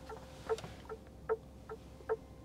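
Aurus Senat turn-signal indicator ticking in the cabin: an even tick-tock of soft clicks, about five in two seconds, every other one louder. The clicks are a soft knock, like tapping on wood.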